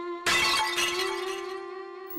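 Background score with a long held string note, cut about a quarter second in by a sudden shattering crash sound effect that dies away over about a second, a scene-transition sting.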